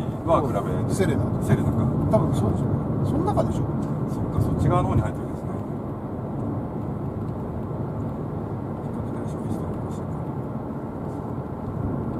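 Steady road and engine noise inside the cabin of a Mazda Biante minivan with a 2.0-litre Skyactiv engine, cruising at an even speed. Voices talk over it in the first few seconds, and then the running noise carries on alone, a little quieter.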